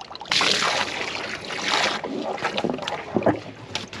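Water gushing at full flow from an open-ended PVC pipe fed by a garden hose, jetting sand out of a clogged culvert pipe. A hissing spray comes in about a third of a second in and is loudest for the first couple of seconds. After that it carries on with splashing and sloshing in the muddy water.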